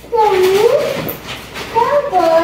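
A drawn-out wordless vocal call that dips and then rises in pitch, followed by another voiced sound near the end.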